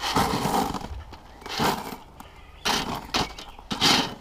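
Pea gravel sliding off a metal spade and landing in a plastic-lined tyre, in about four bursts roughly a second apart.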